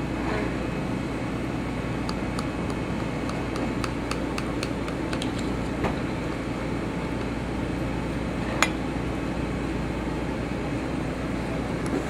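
A knife cutting through a baked pie's crust, heard as light, scattered clicks and crackles with one sharper click about eight and a half seconds in, over a steady background hum.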